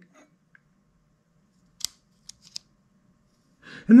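A few small, sharp clicks about two seconds in, from the battery-powered loupe illuminator being handled and fitted together; otherwise nearly quiet.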